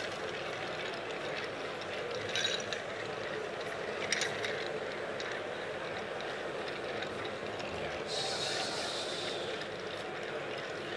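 Ice clinking faintly in a mixing glass as a cocktail is stirred with a bar spoon, a few light clinks over a steady hall background. Near the end comes a hiss lasting about two seconds.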